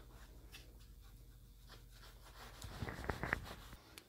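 Ultra-fine Scotch-Brite pad lightly scuffing the lacquered finish of a guitar neck before painting. Faint rubbing, with a few louder scratchy strokes about three seconds in.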